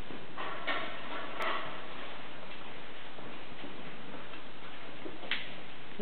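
Steady background hiss with a few faint, scattered clicks: one about half a second in, one near 1.5 seconds and one near the end.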